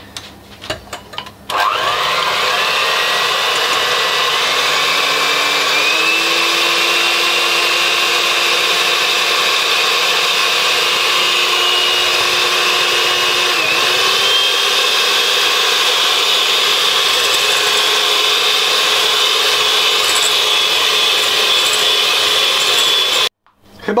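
Handheld electric mixer beating egg whites toward stiff peaks in a glass bowl. It starts after a few clicks about a second and a half in, its motor whine steps up in pitch a few seconds later as it speeds up, and it cuts off suddenly just before the end.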